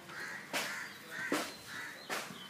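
Crows cawing: two loud caws about half a second and just over a second in, with fainter calls around them.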